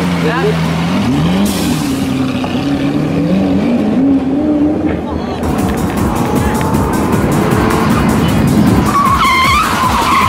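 Bugatti Veyron's W16 engine revving, its pitch climbing in steps, as the car slides off the tarmac. Then comes steady road noise from a car at highway speed, and near the end tyres squeal as a car ahead spins out.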